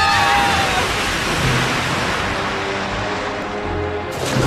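Cartoon sound effect of a steady rushing noise as characters fall down a shaft, under background music; their screams fade out in the first second.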